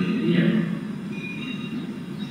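A man's voice speaking Hindi, breaking into a short pause after about half a second.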